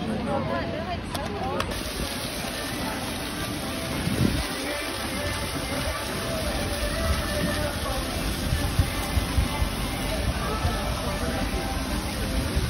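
Voices talking briefly at the start, then a steady outdoor wash of noise with faint music behind it.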